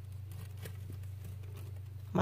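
Faint rustling and a few light ticks from a hand holding up a plastic reptile hide among artificial plants, over a steady low hum.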